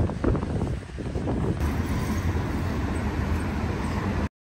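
Road traffic on a city street: a steady rumble of car engines and tyres, with a car driving past close by near the end.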